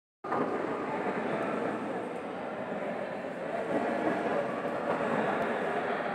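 Steady background hubbub with indistinct voices mixed in, without clear pauses or distinct events.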